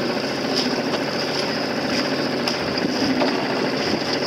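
Small boat motor running steadily.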